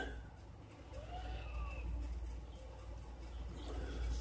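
Quiet room tone: a steady low hum with a few faint, indistinct sounds in the first couple of seconds.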